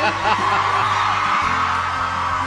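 Large arena audience cheering and applauding, with whoops, over a steady background music bed.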